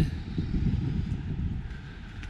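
Wind buffeting the microphone outdoors: an uneven low rumble that eases off toward the end.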